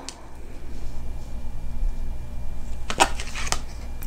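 Oracle cards being handled: a click at the start, then a quick cluster of sharp card snaps and taps about three seconds in as the next card is drawn, over a faint steady hum.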